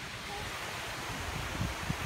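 Wind buffeting a moving handheld phone's microphone, a steady rushing hiss with uneven low rumbles, a little stronger near the end.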